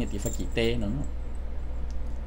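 A man's voice speaking for about the first second, then a pause, over a steady low hum that runs underneath.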